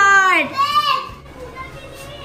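Children cheering: a long, high-pitched shout that ends about half a second in, then a second, shorter shout, after which it drops to quiet room sound.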